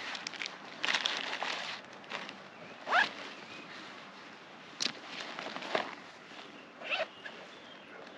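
Zipper on a Forclaz 50 L Air hiking backpack being pulled in short strokes, two rising zips about three and seven seconds in, amid rustling of the nylon pack as it is handled.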